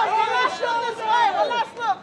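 Several men's voices shouting over one another: press photographers calling out to the person they are photographing, asking for poses.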